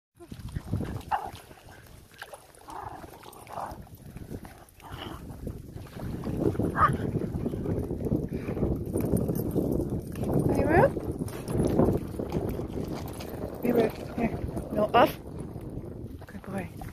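Several dogs barking and yelping in short, scattered calls, a few of them rising in pitch.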